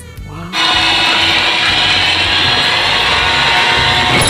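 Soundtrack of an inserted animated film clip: a loud, steady rushing roar that cuts in suddenly about half a second in, with faint music beneath it.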